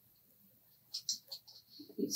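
A few faint, light clicks and taps from about a second in: a small glass ink bottle and its pipette dropper cap being handled.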